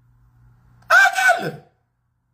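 A man's short, loud wordless vocal outburst about a second in, starting abruptly and falling in pitch, over a faint steady hum.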